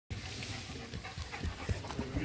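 A dog panting steadily, with a few faint light clicks.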